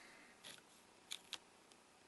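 Near silence broken by three faint, short clicks, about half a second, a second and a second and a third in.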